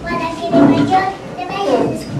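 A young child's voice speaking in short phrases.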